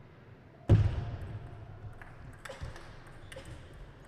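Table tennis rally: a loud thud about a second in, then a few sharp, separate clicks of the celluloid-type plastic ball striking rubber paddles and the table.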